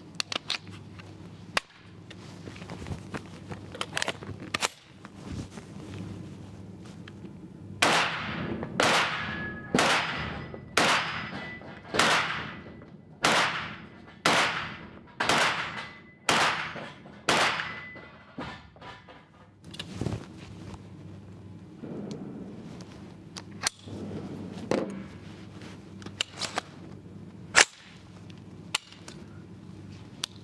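A rifle fired about ten times, roughly one shot a second, each report trailing off in the echo of an indoor range. It is preceded by light clicks and clatter of the rifle being handled and readied, and a few lone clicks follow.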